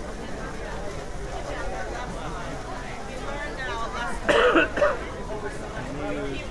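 Chatter of passers-by in a busy street crowd. About four seconds in, someone close by makes a brief, loud throat sound in two quick parts, a throat-clearing cough.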